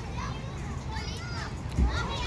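Children playing and calling out to each other in the background, with a dull thump near the end.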